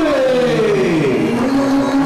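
A man's voice drawing out a long call, probably the winner's name stretched ring-announcer style. Its pitch slides slowly down, then holds level near the end.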